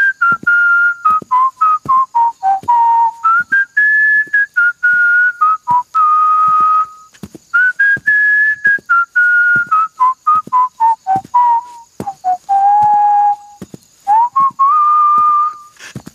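A person whistling a tune: a melody of short notes that step up and down in phrases, with brief pauses between phrases.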